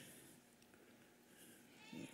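Near silence: faint room tone in a large hall, with a faint voice-like sound rising near the end.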